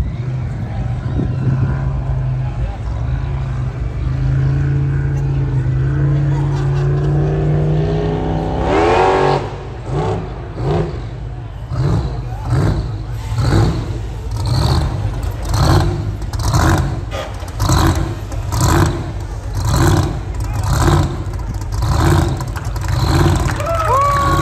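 Hot-rod engine on a dirt track: a steady drone that climbs slowly in pitch, then a sharp rev upward about nine seconds in. After that the engine surges in regular revs, about one a second, as a rat-rod pickup spins in the dirt.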